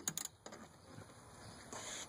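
A few small metallic clicks in the first half second as a small screw and bracket are handled by hand, then only faint background hiss.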